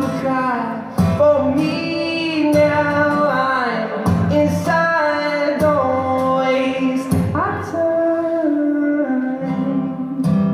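A man singing a melody over a strummed acoustic guitar, live, the strummed chords accented about every second and a half.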